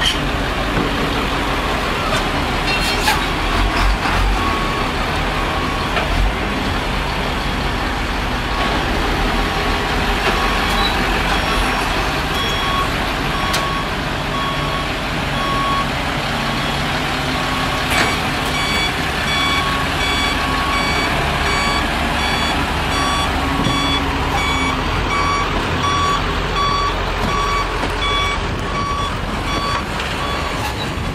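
Tow truck's reversing beeper sounding a steady beep about once a second over the rumble of truck engines and traffic. The beeps grow clearer about halfway through.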